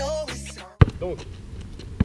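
Hip hop music with a vocal that cuts off abruptly under a second in, followed by one loud basketball bounce on an asphalt court.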